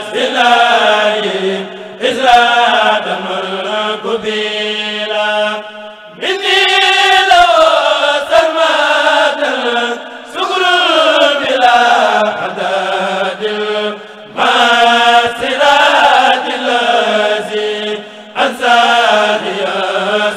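Mouride kurel choir of men's voices chanting a khassida in unison without instruments, in phrases of about four seconds with short breaks between them.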